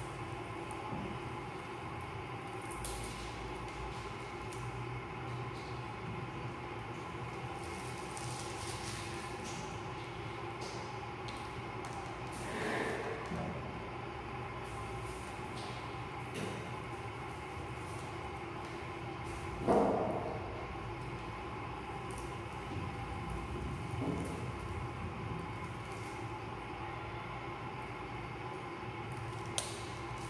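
Clear adhesive tape being peeled slowly off a tabletop, with a few short rips and taps, the sharpest about twenty seconds in, over a steady low background hum.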